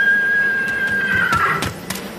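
A single high note held steady for over a second, then dipping slightly and breaking off, with a few sharp clicks near the end.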